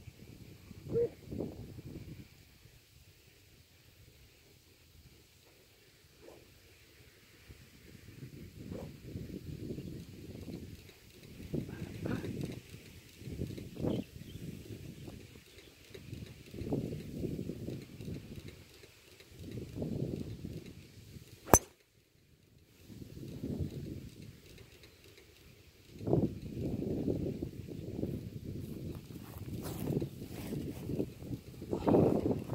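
Wind buffeting the microphone in uneven gusts. About two-thirds of the way through comes a single sharp crack of a golf driver striking the ball off the tee.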